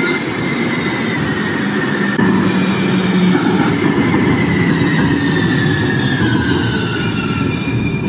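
MAX light-rail train pulling into an underground station platform, running loud and steady with a whine that slowly falls in pitch as it comes in.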